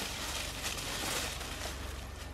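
Faint rustling and crackling of dry leaves and twigs underfoot as a person and dogs move through a pile of fallen branches, with a few light snaps.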